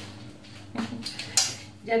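A few light clinks and knocks of a new frying-pan lid being handled against the pan, with one sharp clink about a second and a half in.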